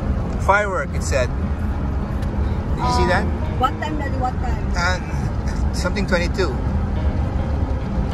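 Steady low road and engine rumble inside the cabin of a moving Toyota SUV, with short bursts of voices over it.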